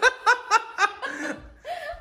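A person laughing in a quick run of short pulses, about five in the first second, then trailing off.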